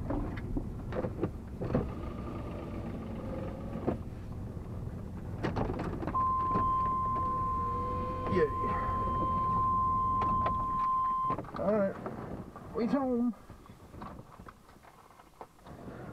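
Truck engine idling with a few clicks and knocks, then shut off about eleven seconds in. A steady electronic tone sounds for about five seconds just before the engine stops.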